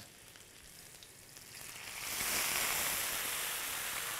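Melted butter and mint leaves sizzling faintly in a frying pan, then a ladle of water poured in about two seconds in sets off a loud, steady hiss as it boils up in the hot butter.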